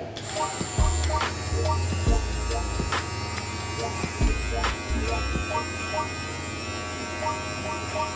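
Philips Multigroom Series 7000 (MG7720/15) battery trimmer with a 7 mm guard running with a steady buzz as it clips hair on the side of the head. Background music with a bass beat plays under it.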